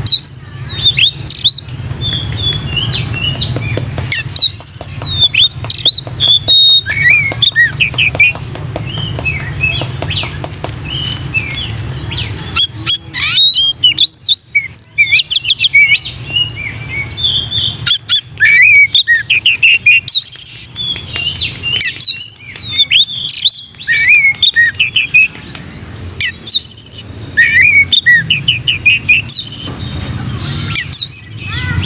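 Oriental magpie-robin (kacer) singing a loud, varied song of quick whistled notes and chirps, in phrases broken by short pauses. It is the full, open-voiced 'gacor plonk' singing that kacer keepers prize.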